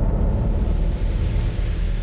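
Loud, deep rumble of a TV title-sequence sound effect, a low boom that dies away near the end.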